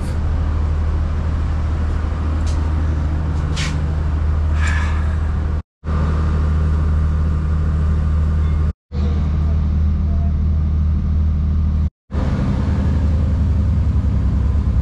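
Steady low hum and rumble of a diesel commuter train running, heard from inside the carriage, with a few short high clicks in the first five seconds. The sound drops out completely for a moment three times.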